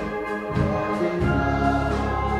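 Congregation singing a hymn together with instrumental accompaniment. A new chord with a deeper bass comes in a little past halfway.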